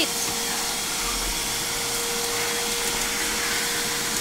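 Shop vac running steadily through its hose, the motor holding one constant whine.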